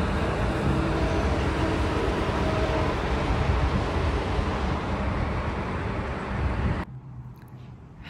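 Road traffic from the street outside, heard as a steady rushing noise with a deep rumble. It cuts off sharply about seven seconds in.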